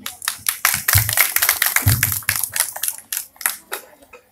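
Applause from a small audience: many irregular hand claps that thin out and die away over the last second.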